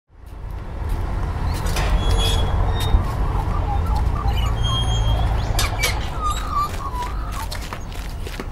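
Outdoor ambience fading in: a steady low rumble with scattered short high chirps and a few clicks over it.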